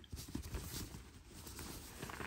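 A hand rummaging inside a handbag's felt organizer insert: faint rustling with scattered soft knocks as things are handled.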